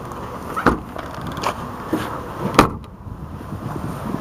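A few light knocks, then one louder thump about two and a half seconds in: the trunk lid of a 2005 Ford Taurus being shut.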